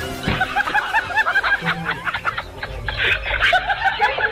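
Laughter: a quick run of short, high-pitched snickers, over background music.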